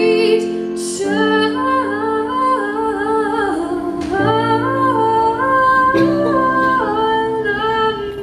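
A woman singing live into a microphone, accompanying herself with held chords on a keyboard; the melody glides between long notes.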